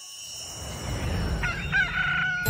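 A rising rush of noise, then a rooster crowing about one and a half seconds in, holding one long note: a cartoon wake-up cue for daybreak.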